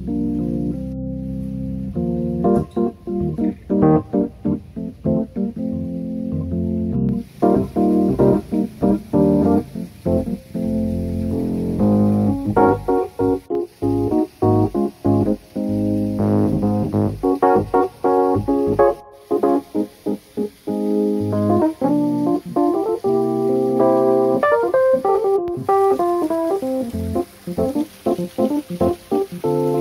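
Background music: a keyboard melody of short, quickly changing notes, with a steady hiss joining about seven seconds in.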